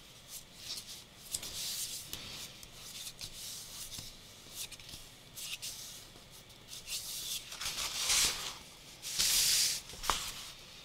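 Hands rubbing and smoothing a paper cover folded around a journal, a soft scratchy rustle of paper with a few small ticks, and a louder sliding swish of paper a little before the end.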